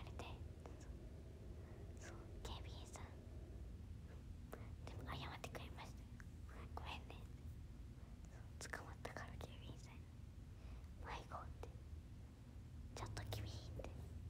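Quiet whispered speech in short phrases over a low, steady room hum.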